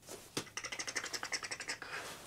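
A click, then a rapid run of small ticks for about a second and a half, roughly ten a second: a clothing fastener on the snowboard gear being worked by hand.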